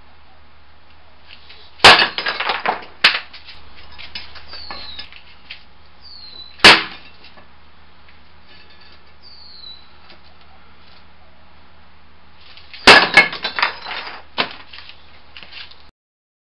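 Concrete patio slab pieces broken with bare-hand strikes on cinder blocks: three sharp cracks, the first and last each followed by about a second of clattering fragments.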